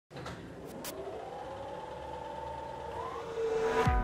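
Intro sound effect under a channel logo: a held, pitched tone that slowly rises and swells, ending in a sudden deep downward sweep near the end.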